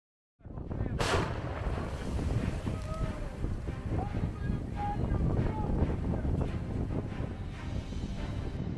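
Steady low rumble at a self-propelled howitzer's position, with a single sharp crack about a second in and a few faint distant voices calling.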